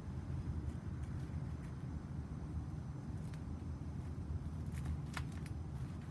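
Faint scuffs and a few light clicks of fingers pushing melon seeds into dry soil in a plastic seed-starting tray, over a steady low rumble.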